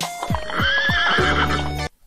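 A horse whinnying, one wavering call starting about half a second in, over a music track with a steady bass; the sound cuts off suddenly just before the end.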